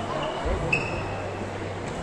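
Indoor shopping-mall ambience: shoppers' and children's voices chattering over a steady low hum. About half a second in there is a dull thump, followed by a short, sharp squeak.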